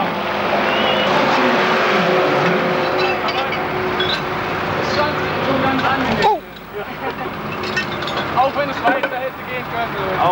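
Loud running of a modified pulling tractor's engine, which cuts off abruptly about six seconds in; men's voices follow.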